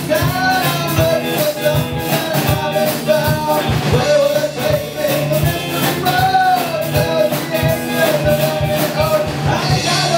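Rock band playing: a man singing lead over electric guitar, electric bass and drums.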